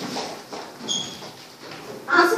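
Low classroom background noise of young children shifting at their desks, with light knocks and a short high squeak about a second in.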